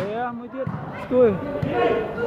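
Men's voices shouting and calling out with rising and falling pitch during a volleyball rally, loudest a little past the middle. A ball is struck by hand once or twice, with short sharp slaps.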